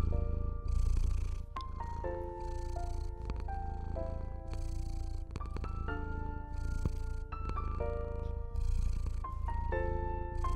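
A domestic cat purring, a continuous low rumble, under slow, soft piano music with single notes and chords. A soft hiss swells and fades about every two seconds.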